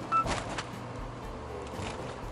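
Steady engine and road noise inside a moving Suzuki Every kei van's cabin, with one short, high electronic beep just after the start, followed by a few light clicks.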